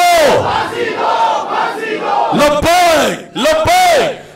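Slogan chanting at a rally: a man shouting slogans through a microphone and PA, answered by a crowd shouting in unison. The shouts are long and drawn out, with two separate ones in the second half.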